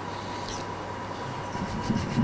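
Steady hiss and electrical hum from the microphone and sound system during a pause in the recitation, with a thin steady tone. A faint, low vocal murmur begins near the end.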